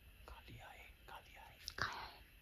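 A man whispering a few words, ending in a louder hushing 'shh' near the end.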